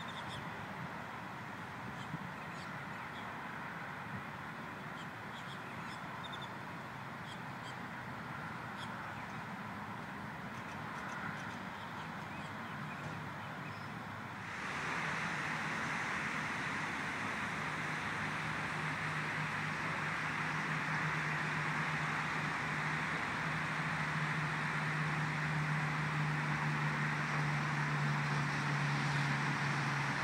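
Outdoor park ambience: a steady bed of distant traffic noise with scattered short bird calls. About halfway through, the sound jumps suddenly louder and steadier, and a low steady hum builds toward the end.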